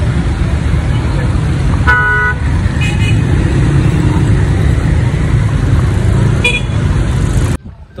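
Road traffic with a heavy, steady low rumble, heard from a moving vehicle. A vehicle horn honks about two seconds in, with short toots about a second later and again near the end. The rumble cuts off suddenly just before the end.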